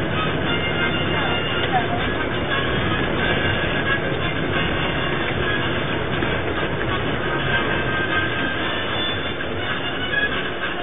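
Steady rumble and road noise inside a moving bus, with music playing underneath.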